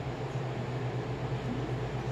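Steady low hum under a faint even hiss of room noise, with no clicks, taps or calls.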